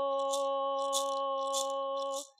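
A woman singing an honor song, holding one long steady note, accompanied by a handheld rattle shaken about every two-thirds of a second.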